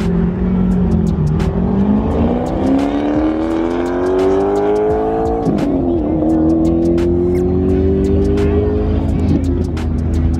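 Car engine accelerating hard at full throttle through the gears. Its pitch climbs for several seconds, drops at an upshift about five and a half seconds in, climbs again, and shifts once more near the end.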